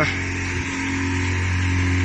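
Steady electric hum of a car wash machine's pump motor running, a little stronger about half a second in.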